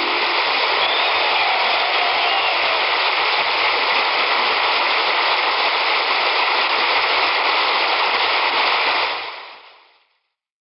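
Audience applauding steadily, fading out over the last second or so.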